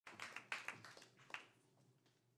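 A few scattered handclaps from an audience, faint and irregular, dying away after about a second and a half.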